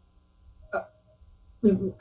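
A pause in a man's speech, broken by a single brief vocal sound from him, a short sharp catch with a little tone after it, before he starts talking again near the end.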